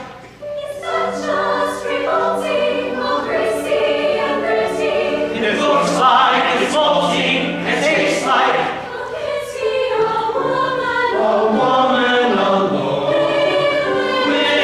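Chamber choir singing in several parts, with a brief break just at the start before the voices come back in together.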